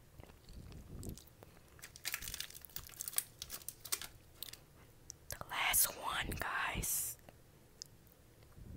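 Close crinkling and clicking as a gummy pizza candy is handled, then a louder, brief stretch of voice about five seconds in.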